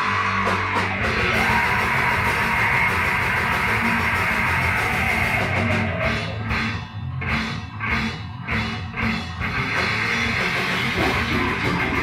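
Extreme metal recording, blackened hardcore in style: distorted guitars, bass and drum kit playing flat out. About six seconds in the band breaks into a run of stop-start hits with short gaps between them, and the full wall of sound returns around the ten-second mark.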